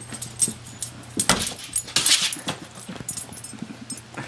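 Dogs moving about after a laser pointer dot: a run of short noisy snuffles and scuffles, with light clicks and metallic jingles; the loudest bursts come just past a second in and again about two seconds in.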